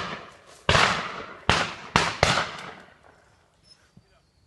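Several shotguns firing at driven partridges: a ragged volley of about five shots in the first two and a half seconds, each ringing out and echoing off the valley before the next.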